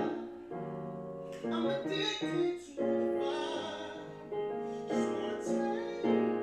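A man singing a slow R&B ballad live over piano accompaniment, holding long notes of about a second each with short breaks between phrases.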